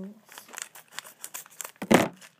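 Plastic Lego minifigure blind bag crinkling and tearing as it is opened, a string of short crackles with a louder rustle near the end.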